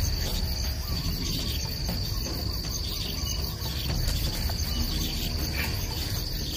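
Insect trill: one steady high-pitched tone, unbroken throughout, over a low background rumble.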